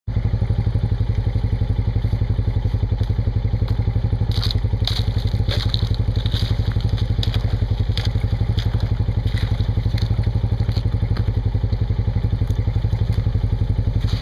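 An off-road vehicle's engine idling steadily with an even, fast pulse. Over it, from about four seconds in, boots splash through a muddy puddle and crunch its thin ice in short bursts.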